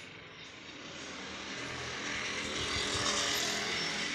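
Engine noise of a passing motor vehicle, swelling to a peak about three seconds in and then easing off.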